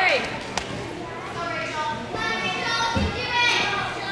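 Voices in a large echoing gym hall, with a sharp knock about half a second in and a low thud about three seconds in.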